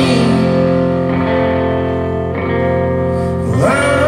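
Rock band playing a slow song live: sustained electric guitar chords under a male voice singing, with the voice sliding up in pitch near the end.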